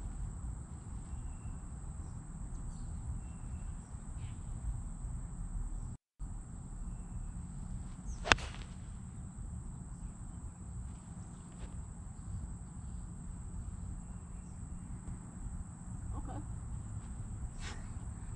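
Ping Eye2 six iron striking a golf ball off the tee: a single sharp crack about eight seconds in.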